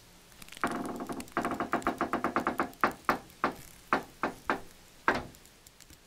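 A short synthesized melody of bright, sharply struck notes: one held note, then a quick run of repeated notes, then about seven separate notes, the last the loudest, stopping about five seconds in.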